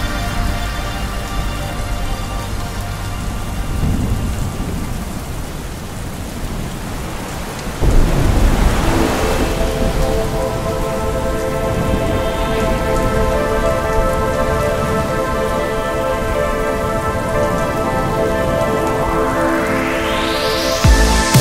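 Steady rain with a rumble of thunder that comes in sharply about eight seconds in, over a sustained synth drone. A rising whoosh builds near the end.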